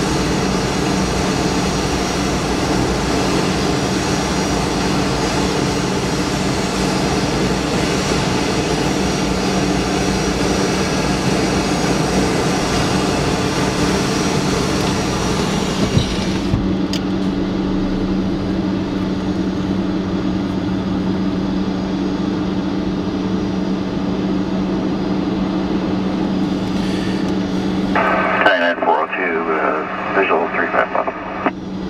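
Steady engine drone heard from inside a parked vehicle on an airport ramp, with a hiss over it that cuts off suddenly about halfway through. Near the end a voice comes over the air traffic control radio.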